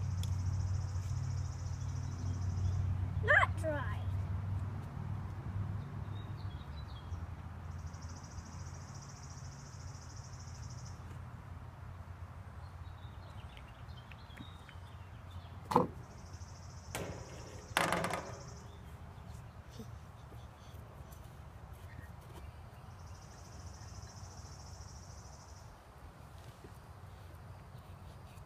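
Outdoor background with a high buzz that comes in spells of about three seconds, repeating every seven or eight seconds. A child gives a short high squeal a few seconds in, then says "boop" and laughs about two-thirds of the way through.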